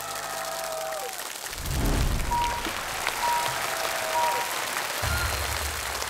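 Studio audience applauding steadily while stage music plays over it, with deep bass notes swelling about a second and a half in and again near the end.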